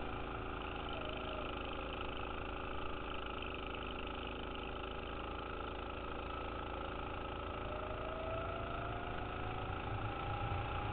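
Go-kart engine running at a steady pitch while the kart takes a corner, then rising in pitch over the last couple of seconds as it speeds up again.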